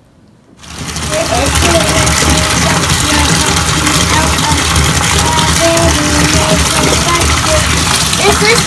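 Bathtub faucet running, a steady rush of water pouring into a filling tub. It starts suddenly about half a second in.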